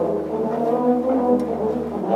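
Tuba and euphonium ensemble playing low brass chords, the notes sustained and changing as the music moves.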